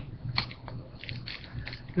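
Light clicks and clacks of hard plastic card holders being handled and set down on a desk: a couple of single taps, then a quick run of small clicks in the second half.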